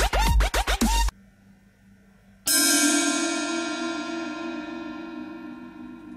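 Electronic dance music that cuts off abruptly about a second in. After a short pause, a Triplesix H-series cymbal is struck once with a drumstick and rings on, fading slowly.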